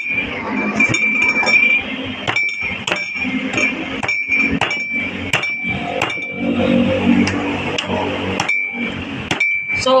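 Large knife chopping into the husk of a young coconut: a series of sharp, irregularly spaced strikes as the husk is pared away.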